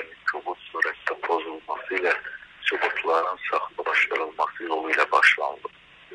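Speech only: a man talking steadily in Azerbaijani, heard through a narrow, telephone-quality recording.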